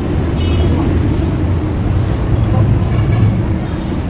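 Busy street-market background: a steady low engine rumble from nearby vehicles, with faint voices in the crowd.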